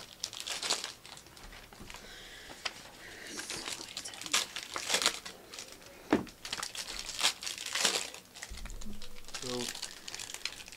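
A trading card pack's wrapper crinkling and tearing as it is ripped open and the cards handled, in an irregular run of crackles.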